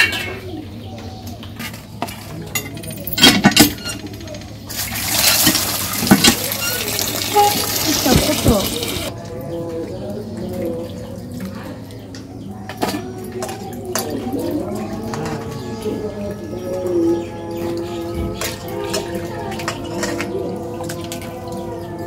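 Water splashing as cut vegetables are washed by hand in a steel bowl. There are a couple of sharp knocks about three seconds in, then a rush of poured water lasting about four seconds from about five seconds in, then softer dripping and sloshing as the pieces are squeezed out.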